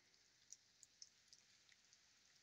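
Near silence, with about five faint, scattered ticks of rain dripping.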